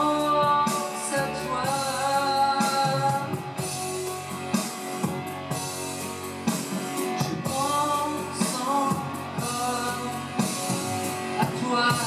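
A male singer singing a French pop ballad live into a handheld microphone, over an instrumental accompaniment with drums and guitar.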